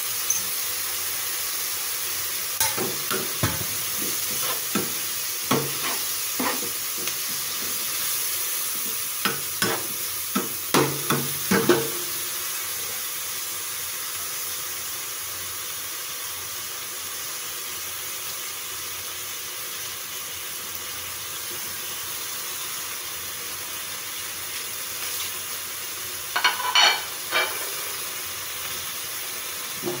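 Pork and scallions sizzling as they stir-fry in a frying pan, a steady frying hiss throughout. A spatula knocks and scrapes against the pan in clusters of strokes through the first twelve seconds and again briefly near the end.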